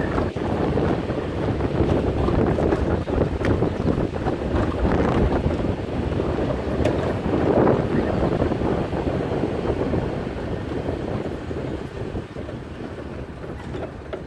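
Wind buffeting the microphone over the rumble of a pickup truck driving on a rough dirt road, heard from its open back, with occasional knocks and rattles. The noise eases somewhat in the last few seconds.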